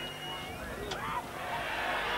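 Rugby league crowd murmuring and calling out, with a single sharp knock about a second in. The crowd noise builds toward the end.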